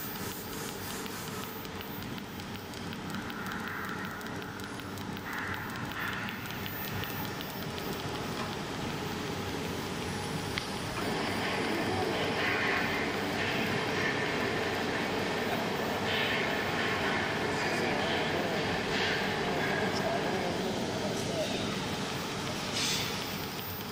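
Automatic TIG seam welding machine running during a weld: a steady machine hum over workshop noise, growing louder about halfway through.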